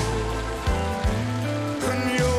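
Live band playing a slow ballad between sung lines: sustained bass notes and held chords with a few drum hits and cymbal wash.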